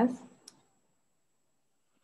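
The tail end of a spoken "yes" heard over a video-call link, then a single short click about half a second in.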